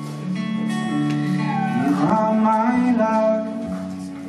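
Live solo acoustic guitar playing with a man singing. In the middle his voice holds a long note that slides up and down in pitch.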